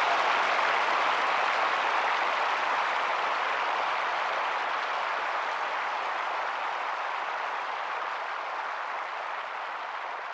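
A steady wash of hiss-like noise fading slowly, the closing tail of a dark progressive house track after its last beats have stopped.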